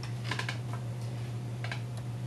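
A handful of light, scattered clicks and taps over a steady low electrical hum: a player handling the keys and tab controls of a Hammond console organ.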